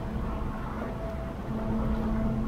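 Low, steady rumble and drone of the freighter Mesabi Miner's two 16-cylinder Pielstick diesel engines as the ship passes close by, with a steady hum that strengthens about one and a half seconds in.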